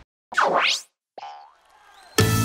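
Cartoon transition sound effects: a swooping glide that drops in pitch and then climbs steeply, followed by a shorter, fainter blip that fades out.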